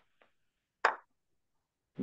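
A single short pop, a little under a second in.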